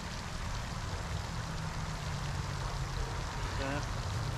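Steady splashing of a pond fountain, with a faint low hum underneath.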